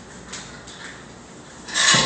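Milk poured from a glass bottle into the stainless-steel Thermomix mixing bowl, starting suddenly as a loud splashing rush near the end; before that only faint, quiet noise.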